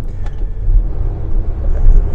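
A steady low vehicle rumble, like an engine running, heard from inside a van's cab.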